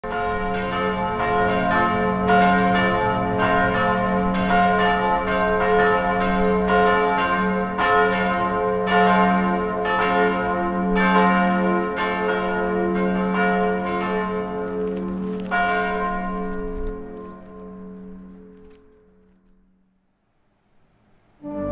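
Church bells ringing, with two or three strikes a second over a steady low hum. The strikes stop a few seconds before the end, and the ringing dies away to near silence.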